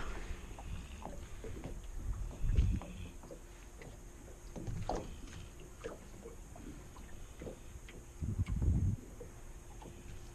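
Water lapping against a small aluminum boat's hull, with light knocks and a few low thumps about two and a half, five and eight and a half seconds in.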